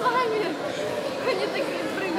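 Several high voices talking and calling out over crowd chatter, echoing in a large sports hall.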